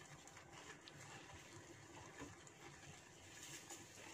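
Near silence, with only faint sounds of a whisk stirring chickpea flour roasting in ghee in a nonstick pan.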